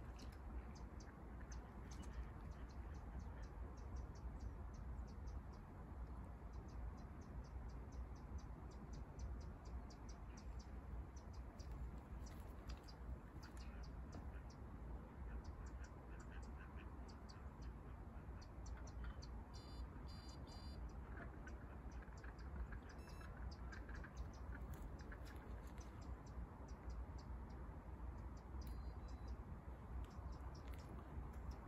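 Faint, irregular clicking and ticking from a fishing reel as the line is handled and tightened after a cast, over a steady low rumble.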